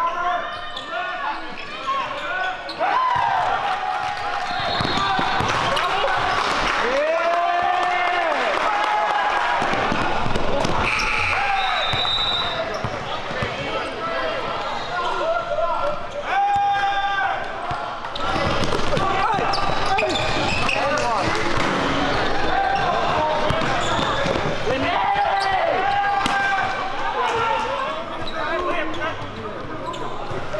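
Live basketball game sound in a gym: a basketball bouncing repeatedly on the hardwood court, with players' voices calling out.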